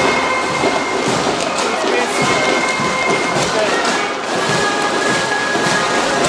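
Street parade noise: a jumble of voices from marchers and onlookers, mixed with band music.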